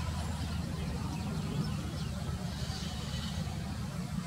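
Steady low outdoor rumble, like distant traffic, with a few faint high chirps.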